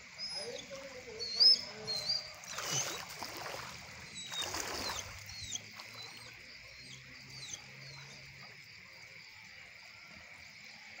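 Outdoor ambience of rain-soaked ground: birds chirping in short calls, mostly in the first half, over a steady high insect drone. Two short bursts of rushing noise come a few seconds in and near the middle, with one sharp peak before them.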